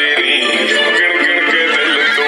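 Background music: a song with a voice singing over the instruments.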